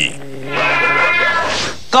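A cat's long, drawn-out meow, starting about half a second in and held for a little over a second.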